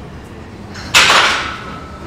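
A single sudden metallic clank from a gym cable machine, about a second in, with a brief ring that fades within about half a second.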